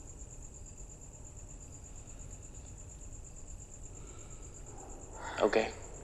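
Crickets trilling steadily in a high, fine pulse over a low background hum.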